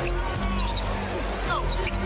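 A basketball dribbled on a hardwood arena court during a post-up, over steady arena crowd noise and background music.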